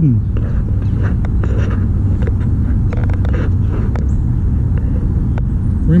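Steady rumble of traffic on a nearby highway, with a few faint short clicks over it.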